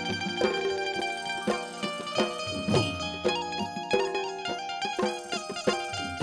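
Instrumental Gujarati folk music: a plucked string instrument plays a melody over a steady rhythm of drum strokes and struck metal percussion, including a small hanging brass gong.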